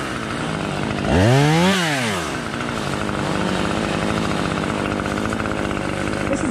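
Two-stroke chainsaw idling, revved up and back down once about a second in, then running at a steady idle.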